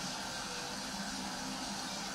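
Studio audience applauding, a steady even clatter heard through a television speaker.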